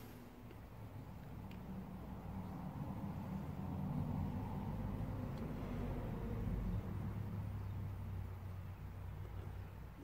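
Faint low rumble with a steady hum, swelling a little past the middle and easing off toward the end.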